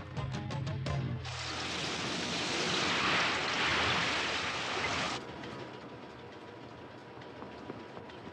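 Background music fades out in the first second, then a storm sound effect of driving rain and rough sea comes in suddenly, loud for about four seconds, before dropping to a softer steady rush near the end.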